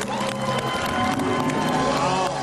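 Studio audience applauding over a sustained game-show music sting marking a correct answer.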